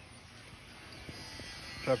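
Quiet outdoor background with a faint steady low hum. A man starts speaking near the end.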